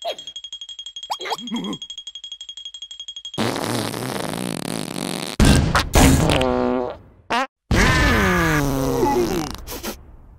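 Cartoon comedy sound effects over music. A high, fast-pulsing whine with a short squeal comes first. Loud rasping, fart-like noises follow, their pitch falling, and the last is one long downward slide.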